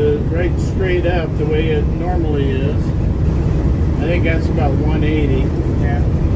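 MCI MC-5B coach cruising at highway speed, heard from inside: a steady low engine and road drone, with people's voices talking over it.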